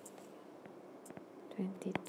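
Quiet steady background hiss of a voice recording with a few faint clicks. A man's voice begins near the end.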